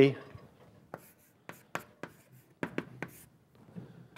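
Chalk writing on a blackboard: a run of sharp taps and short scratchy strokes, about six of them between one and three seconds in, with fainter scratching near the end.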